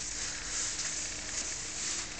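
Kitchen paper towel being wiped along a brushed stainless steel oven handle and door, a soft steady rubbing, buffing the surface with the cleaner-polish left on the paper.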